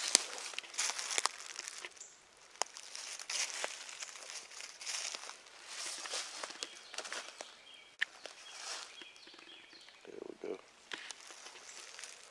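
Footsteps crunching through dry leaf litter on a forest floor, uneven as the walker moves and pauses, with a few sharp snaps and clicks among the rustling.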